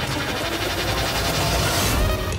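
Loud electronic dance music, in a dense, noisy passage where the regular beat of the seconds before gives way to a wash of sound.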